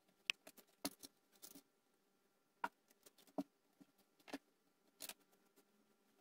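Faint, irregular clicks and taps of hands handling copper wire and a binder clip on a wooden soldering block, about a dozen in all with no steady rhythm.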